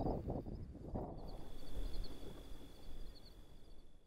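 Outdoor field ambience: an irregular low rustle of noise, louder in the first second, under a thin steady high tone and faint short chirps, all fading out at the end.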